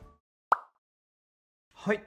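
Background music fading out, then in dead silence one short, sharp pop sound effect about half a second in, the loudest thing here.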